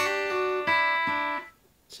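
Acoustic guitar: a D chord struck, then a quick trill of changing notes on the top two strings over the held chord, ringing about a second and a half before it is cut off.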